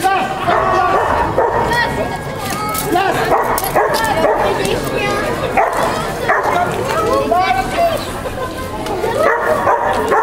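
A dog yipping and barking over and over, amid the chatter of a crowd.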